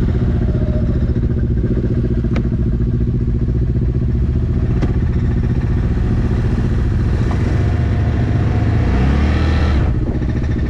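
Large utility quad's engine running at idle, with the revs picking up slightly near the end.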